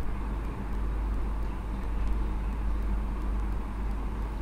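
Steady low background rumble with a faint even hiss above it, unchanging throughout.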